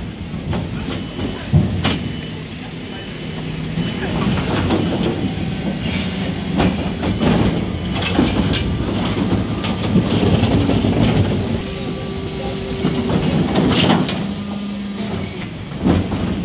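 Geesink rear-loader refuse truck's hydraulic bin lift and compactor working at the back of a Mercedes Econic: a steady mechanical hum that shifts pitch in steps as the lift and packer move. Several loud knocks and clatters come from an 1100-litre wheeled bin being lifted and tipped.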